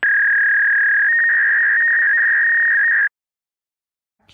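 A steady, high-pitched electronic beep tone, held for about three seconds. Its pitch steps up slightly about a second in, and then it cuts off suddenly.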